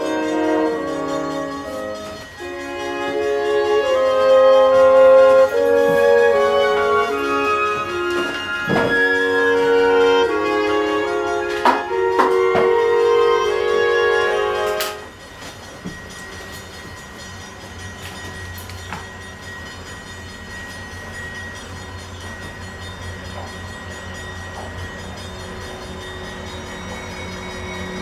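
Brass music for about the first half, cutting off abruptly; then a diesel locomotive's engine rumbles low and steadily as it approaches hauling passenger cars, quieter than the music and slowly growing.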